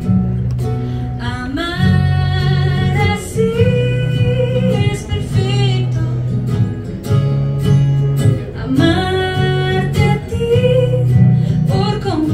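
Live acoustic song: an acoustic guitar and a ukulele strummed together while a woman sings long held notes over them.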